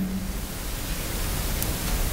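Steady hiss of room and recording noise, with no other sound standing out.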